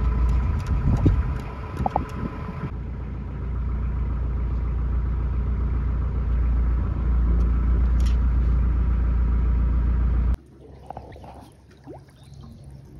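Narrowboat diesel engine idling, a steady low rumble, with a few light knocks in the first couple of seconds; the rumble drops away abruptly about ten seconds in.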